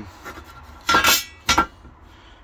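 Shot-blasted mild-steel diffuser fins clinking as they are handled on the workbench: a ringing clink about a second in and a second, sharper one shortly after.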